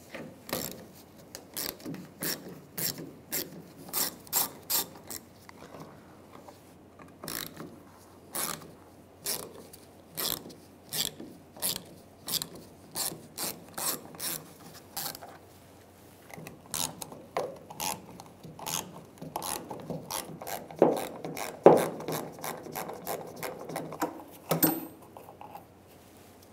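Hand ratchet driving a 7 mm socket on an extension, clicking in runs of two or three clicks a second as it backs out the small bolts of a fuel filler neck. In the second half the clicking gets more irregular, mixed with lower knocks and scraping of metal.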